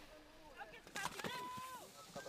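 Faint background voices, with a few clicks about a second in and a short steady tone lasting about half a second just after.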